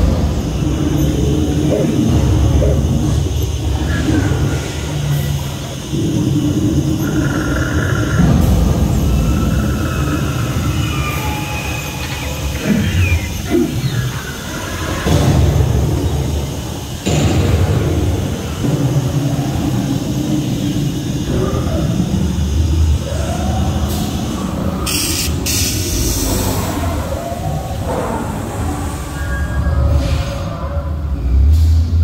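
Loud, busy soundtrack of an indoor boat dark ride: a steady low rumble under music-like effects and swooping sounds, with a short hiss near the end.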